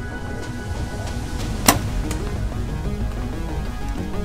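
Background music, with one sharp snap of a compound bow being shot about a second and a half in: the finishing shot on a wounded ram.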